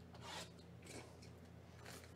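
Cellophane shrink wrap on a trading-card hobby box being torn and pulled off by hand, three short faint rips, over a steady low hum.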